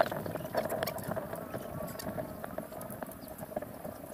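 Small playing pieces clicking as they are dropped one by one into the pits of a wooden sungka board, an irregular run of light clicks, with faint voices in the background.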